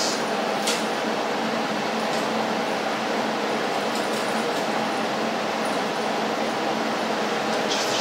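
Steady whirring hum of an inverter TIG welder's cooling fan running at idle, with a few faint clicks.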